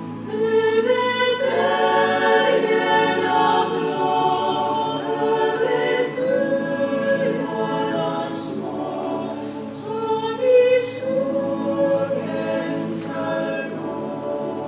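Mixed barbershop chorus of young men and women singing a cappella in close harmony, moving through held chords. Crisp sung "s" sounds cut through four times in the latter half.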